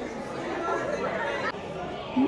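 Indistinct background chatter of several people's voices in a shop, with no one voice standing out.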